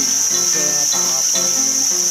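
Steady, high-pitched drone of insects in tropical forest, with a sung song playing more softly underneath.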